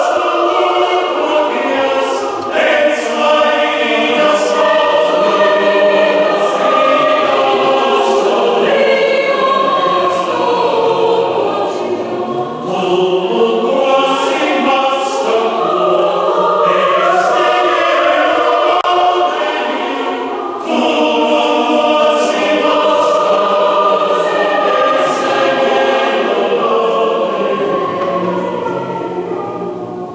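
Mixed choir singing sustained chords in many parts, the sharp 's' consonants cutting through, the sound dying away near the end.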